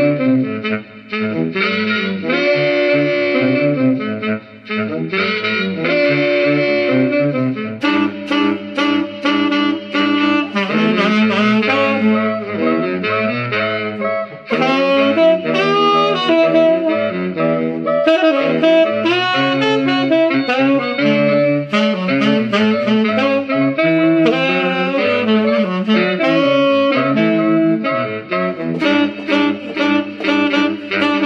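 Tenor saxophone playing an upbeat tune in short, rhythmic phrases, close-miked at the bell.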